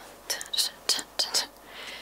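A woman whispering a few short, breathy syllables.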